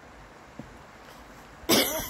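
A quiet stretch, then a single loud cough close to the microphone near the end.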